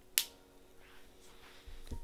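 A single sharp click of a plastic lipstick cap snapping shut onto the tube, followed by faint handling noise and a soft low bump near the end.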